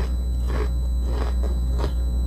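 Close-up crunchy chewing of a mouthful of peanuts, four or so crunches about half a second apart, over a steady low electrical hum.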